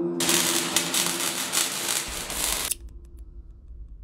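Dense crackling hiss lasting about two and a half seconds, then cutting off suddenly and leaving a faint low hum.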